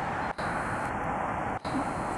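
Steady, even background rush of outdoor noise with no distinct event, cutting out briefly twice.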